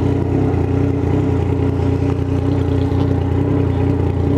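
Yamaha MT-09's three-cylinder engine idling steadily while the bike stands still.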